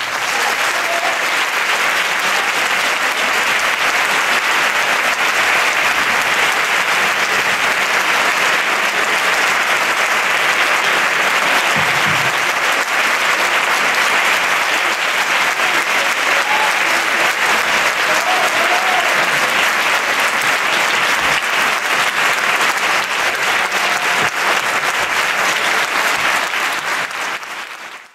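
Audience applauding steadily at the close of a concert band performance, the clapping fading out near the end.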